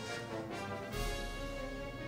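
Concert band music from the anime's contest performance, brass holding sustained chords, played back fairly quietly.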